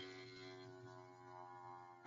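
Near silence: a faint, steady hum made of several held tones, on a call's audio line.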